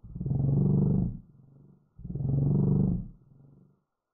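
Heavily slowed-down, pitch-lowered audio: two deep, drawn-out pitched sounds of about a second each, the second starting about two seconds in.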